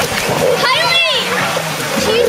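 Children's voices shouting and calling, with a high squeal about a second in, over water splashing in a swimming pool as they play on a floating foam mat.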